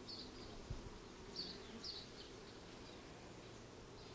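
Faint, steady buzzing of honeybees crawling on a comb frame held out of the hive, with a few short high chirps over it.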